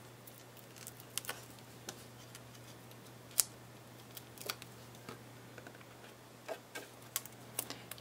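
Cardstock being handled and pressed down by hand: scattered light clicks and taps, the sharpest about three and a half seconds in, over a faint steady hum.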